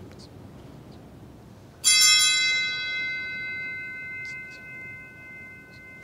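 An altar (sanctus) bell struck once, with a bright attack and a ringing tone that fades away over about four seconds. Rung by the server during the Canon of a Traditional Latin Mass, the kind of bell that marks the consecration and elevation.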